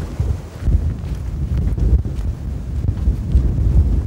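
Wind blowing across the camera microphone, a low rumble that rises and falls in gusts.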